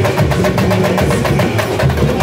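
Samba-school bateria (drum section) playing a fast, dense samba rhythm: deep surdo bass drums under a rapid patter of snare drums and other hand percussion.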